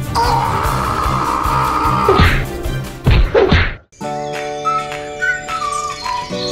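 A cartoon scream held for about two seconds, followed by a run of whack and crash sound effects that cuts off abruptly. Light children's background music starts about four seconds in.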